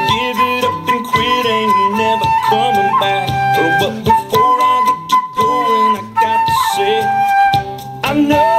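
Concert flute playing a melody of long held notes with slides and bends, over a country-rock band accompaniment with drums.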